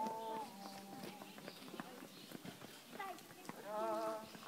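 Distant voices calling out in long held tones, one fading just after the start and another beginning near the end, with scattered light clicks in between.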